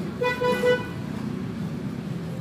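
A vehicle horn honking in three quick short beeps about a quarter of a second in, over steady street background noise.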